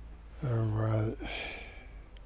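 A man's short wordless vocal sound, held on one steady low pitch for under a second, then trailing off into a breathy exhale like a sigh.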